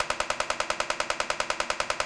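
Magstim transcranial magnetic stimulation coil on the head clicking in a rapid, even train of about ten pulses a second: a burst of repetitive TMS being delivered.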